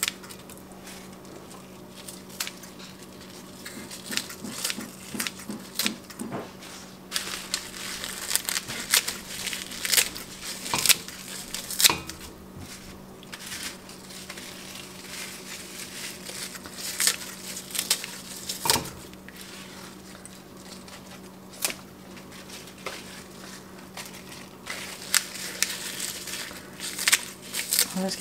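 Kitchen scissors snipping turnip greens, the leaves crinkling as they are cut and dropped into the pot, in irregular clusters of short crisp snips.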